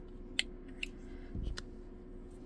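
A diamond-painting drill pen tapping resin drills onto the canvas: a few light, sharp clicks and a soft thump, over a faint steady hum.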